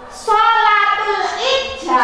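A loud female voice in long held tones that slide up and down in pitch, starting about a quarter second in, sung or drawn out rather than plainly spoken.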